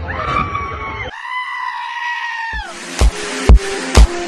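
A long, high, held cry, wavering at first and then steady, which drops off about two and a half seconds in. It is followed by electronic music with a heavy kick drum about twice a second.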